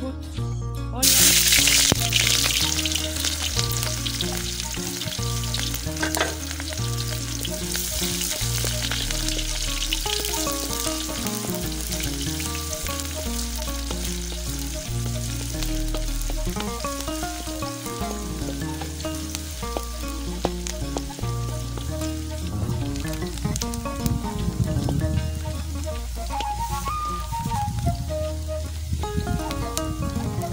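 Chopped onions dropped into hot cooking oil in a metal wok: a loud sizzle starts about a second in and settles into steady frying while they are stirred with a wooden spoon. Background music with a steady bass line plays underneath.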